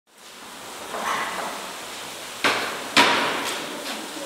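Kitchen work at cooking stations: a steady hiss of food frying in a pan, with two sharp knocks of utensils against cookware about two and a half and three seconds in, the second the loudest, and a lighter one near the end.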